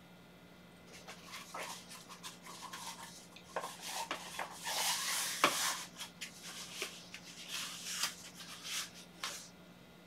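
Rustling and rubbing of a blood pressure monitor's fabric arm cuff being wrapped and adjusted around the upper arm, a run of scratchy strokes that is busiest and loudest about four to six seconds in.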